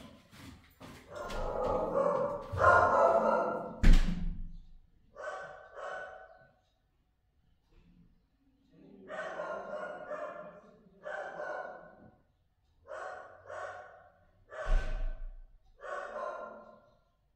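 A dog barking in short bursts, often two at a time, set off by the doorbell. There is a sharp thud about four seconds in.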